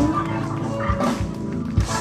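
Live rock band (electric guitars, bass, drums and electronic organ) playing the last bars of a song, closing on a loud hit near the end.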